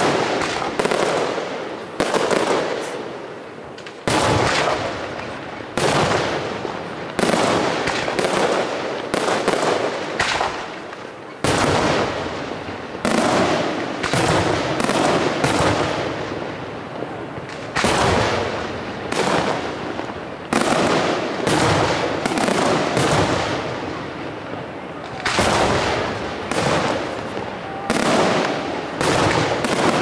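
Arigò aerial firework shells bursting in quick succession, a loud bang every one to two seconds, each trailing off in a rolling echo.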